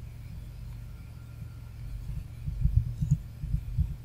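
A steady low electrical hum on the recording, with a few dull low thumps in the second half.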